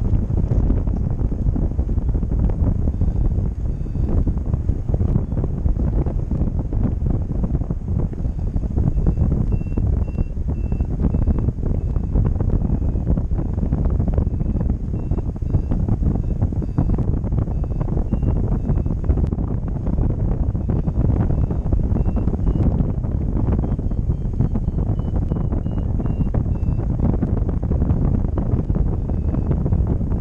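Wind buffeting the camera microphone during a tandem paraglider flight, a steady low rush. Faint trains of short high beeps, typical of a paragliding variometer signalling lift, come and go from about nine seconds in, their pitch climbing and then falling off later on.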